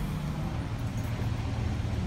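A steady low mechanical hum with a faint even rushing noise over it.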